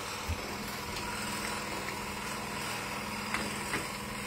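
Steady hum of workshop machinery with an even low drone. A soft thump comes about a third of a second in, and a couple of faint light clicks come near the end.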